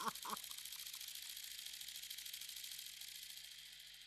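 A man's hearty laugh trails off in the first half-second, then the faint, high, fast-rattling whir of a spinning paper pinwheel, which slowly fades away.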